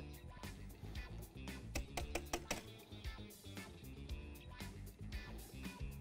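Wire whisk clicking irregularly against a glass bowl while stirring cornstarch into milk, over faint background music.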